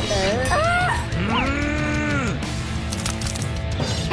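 Cartoon-style vocal sound effects: drawn-out, bending 'ooh'-like cries, the longest about a second, over steady background music.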